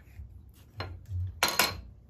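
A metal woodworking square set down on a steel table top with a few sharp clinks about three-quarters of the way through, just after a soft knock of the wooden block on the table.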